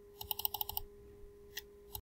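A quick run of about eight sharp clicks in just over half a second, then two single clicks near the end: clicking at a computer's mouse or keyboard, over a faint steady electrical hum.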